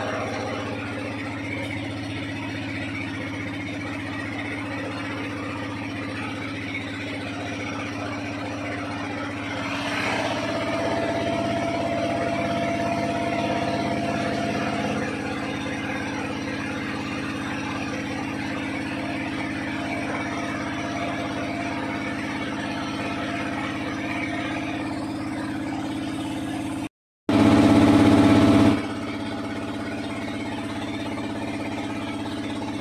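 Small boat's motor running steadily under way. It picks up a little about ten seconds in and settles again. Near the end the sound cuts out for a moment and comes back louder for about a second and a half.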